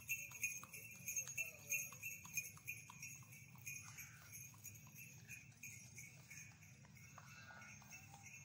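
Harness bells on a horse-drawn carriage jingling rhythmically, with the clip-clop of hooves, growing fainter after about four seconds.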